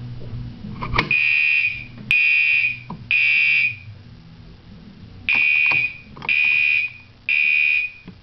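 A sharp snap about a second in as the Harrington Signal pull station's lever is pulled down and its glass rod breaks, then a loud fire alarm horn sounds three blasts, pauses, and sounds three more: the temporal-three evacuation pattern.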